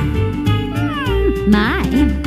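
Cartoon soundtrack: jazzy background music with a steady bass beat. Over it, a high, voice-like sound slides down in pitch around the middle, and a quick rising cry comes near the end.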